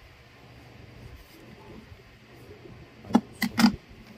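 Folding aluminium-alloy phone stand with plastic hinges handled in the hand: faint room noise, then three sharp clicks and knocks of its parts near the end.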